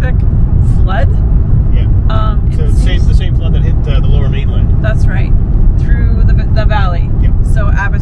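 Steady low rumble of road and engine noise inside a moving car's cabin, with people talking over it.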